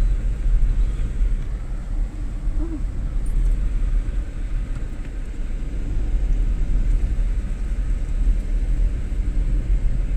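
Car driving slowly along a street: a steady low rumble of engine and road noise.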